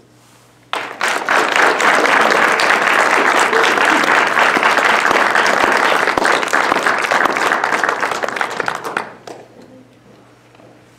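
Audience applauding, starting suddenly under a second in, then dying away near the end.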